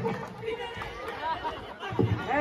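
Chatter of a group of people talking among themselves, at a lower level than the voices around it.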